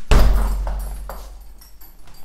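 A bare-fist punch landing on a hanging heavy punching bag: a single heavy thud just after the start that dies away over about a second, followed by a few faint clinks from the bag's hanging chains.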